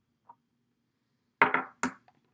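Two sharp knocks about half a second apart, the first the louder with a short ring-out: makeup items being put down and picked up on a table. A faint tick comes just before them.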